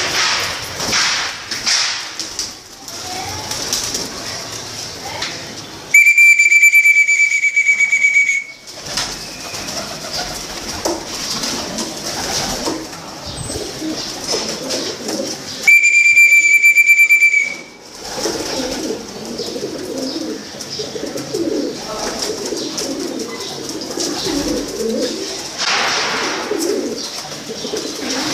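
Domestic pigeons cooing in a loft. Twice, a loud, high, steady whistle-like tone of about two seconds cuts across them, once about six seconds in and again near sixteen seconds.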